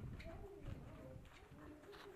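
Faint low cooing calls of a bird, with a few light knocks.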